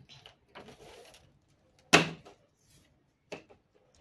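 Pattern paper and drafting tools being handled on a hard floor: a short paper rustle, then one sharp knock about two seconds in, and a couple of small clicks later.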